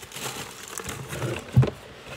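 Tissue paper rustling and crinkling as it is pulled out of a shoebox, with one short dull thump about one and a half seconds in.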